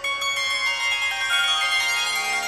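Intro music sting of bell-like chimes: a shimmering run of ringing notes that steps down in pitch.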